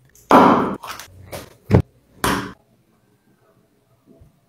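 Handling noises: a few knocks and thumps as a glass jar and a cream carton are handled and set on a wooden tabletop. The loudest and longest comes about half a second in, and the others follow within the next two seconds.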